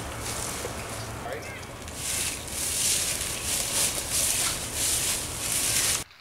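Wind buffeting an outdoor microphone: a steady low rumble with gusty hiss that swells and fades, and faint distant voices now and then.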